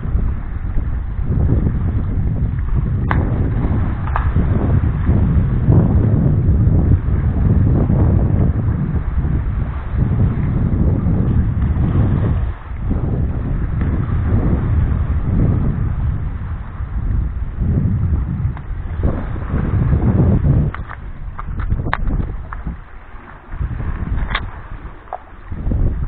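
Wind buffeting the camera microphone in gusts, a low rumble that rises and falls, dying down somewhat near the end.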